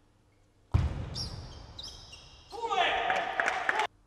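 Shouting voices in a large hall: a sudden loud outburst about a second in that slowly fades, then louder shouting that cuts off abruptly near the end.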